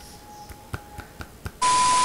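A few faint clicks, then, about one and a half seconds in, a loud burst of TV-static hiss with a steady beep tone running through it: an edited glitch transition sound effect.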